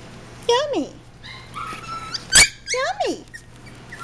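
Goldendoodle puppies whining and yipping: a few short, high-pitched cries that slide down in pitch. There is a sharp knock about two and a half seconds in.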